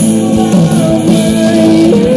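Live pop-rock band playing: guitar, bass and drum kit, with a held melody line over steady drum hits.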